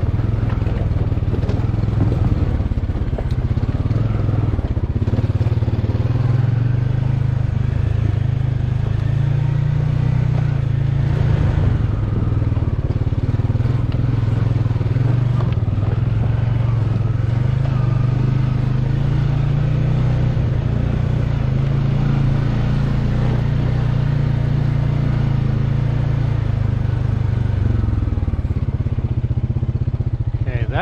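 ATV engine running steadily under way, a constant low drone with no pauses, while the machine is ridden over a rough, rocky trail.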